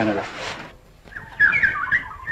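A chicken calls in a warbling voice that wavers up and down, starting about halfway through, after a man's voice trails off.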